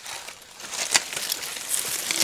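Rustling and light cracking of a bundle of firewood sticks being grabbed and shifted by hand, with a few sharp clicks about a second in, growing louder near the end.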